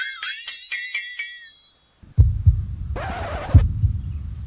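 Comedy background music: a quick run of bright chiming notes climbing in pitch, about four a second, that stops after a second and a half. After a short gap comes a low pulsing bass beat, with a brief hissing whoosh about three seconds in.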